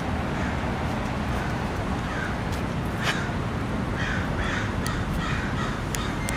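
Birds calling outdoors, a run of short calls repeating every half second or so and coming closer together in the second half, over steady background noise. A single sharp click about three seconds in.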